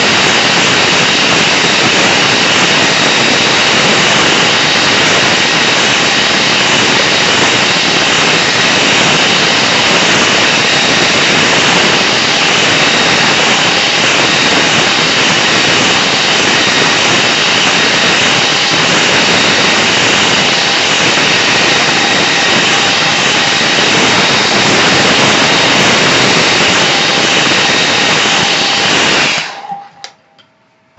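Hairdryer blowing steadily over a wet watercolour painting to dry it, with a faint high whine from its motor; it is switched off suddenly about a second before the end.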